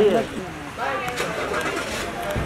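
Indistinct voices of several people talking and calling out over one another, with a brief lull about halfway through.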